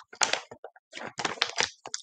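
Clear plastic zippered binder pouch crinkling and crackling as it is handled and flexed, in a string of short bursts.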